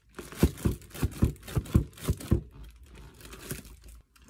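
Plastic packing wrap being torn and crumpled by hand as a typewriter is unwrapped. A quick string of sharp crackles and rips comes first, then softer crinkling for the rest.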